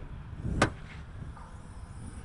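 Rear liftgate of a 2007 Ford Escape being unlatched and opened: a single sharp latch click about half a second in, on a short swell of noise, then low background noise as the gate swings up.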